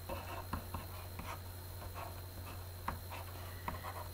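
Faint scratching and tapping of a pen stylus on a tablet as small circles and lines are drawn, in short irregular strokes over a steady low electrical hum.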